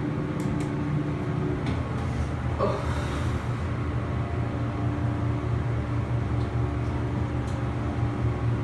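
Hydraulic elevator car travelling up one floor: a steady low hum of the running pump and car ride, which grows stronger about three seconds in.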